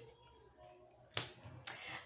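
Near silence, then two short sharp clicks about half a second apart, a little over a second in: tarot cards being handled and snapped against each other or the table.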